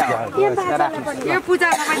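Several people talking at once, close by.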